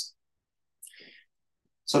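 A pause in a man's lecture speech: near silence, broken about a second in by one faint, brief mouth click from the speaker, with his speech picking up again near the end.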